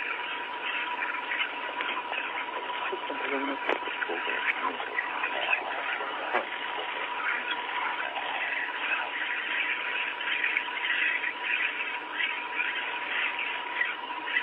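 Hiss and chatter of a narrow, radio-like audio feed with a steady high tone running under it, and a short laugh about five seconds in.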